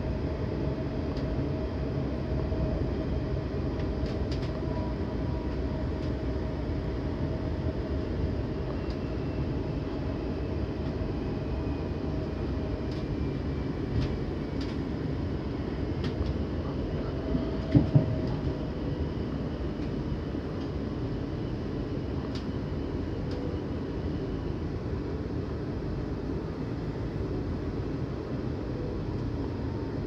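Interior running noise of a Class 450 Desiro electric multiple unit: a steady rumble of wheels on rail with scattered clicks, and a faint whine that slowly falls in pitch as the train slows for a station stop. Two sharp knocks come a little past halfway.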